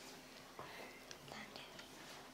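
Near silence: quiet room tone with a faint steady hum and a few soft ticks.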